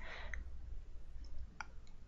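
Pause in the reading: faint room noise with a steady low hum and a couple of short, faint clicks, about a third of a second in and about a second and a half in.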